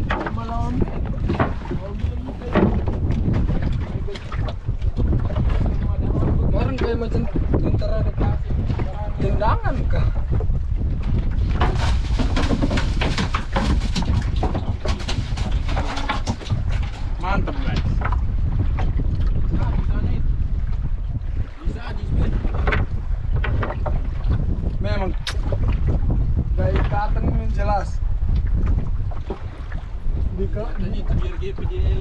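Wind buffeting the microphone as a steady low rumble on open water, with people's voices talking on and off.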